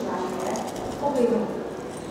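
A person biting into and chewing a piece of fried bitter melon omelette, with a brief falling hum from the eater a little past a second in.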